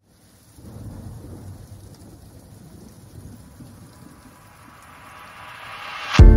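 Quiet rain-and-thunder ambience opening a song: a fluctuating low rumble under a steady rain-like hiss. The hiss swells and rises toward the end as a build-up into the beat.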